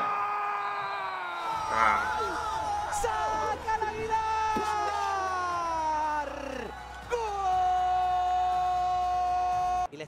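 A man's drawn-out goal shout of 'gooool' for a goal just scored. One long held call with its pitch slowly sinking lasts about six and a half seconds, then a second held call stays level and cuts off abruptly near the end.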